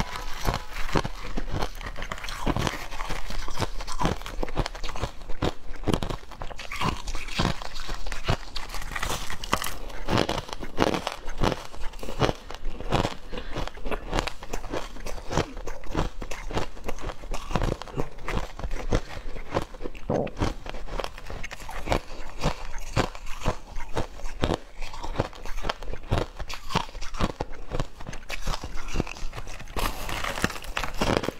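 Crushed ice crunched between the teeth in quick, continuous bites and chews, with crackling as handfuls of ice are scooped from the bowl.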